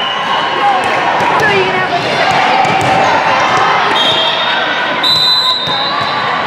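A volleyball bouncing and being struck on a gym floor, with short referee whistle blasts, the strongest near the end, over the steady chatter of voices in a large gym hall.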